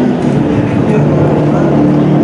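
A loud, steady wash of many voices speaking or reciting at once, with no single voice standing out.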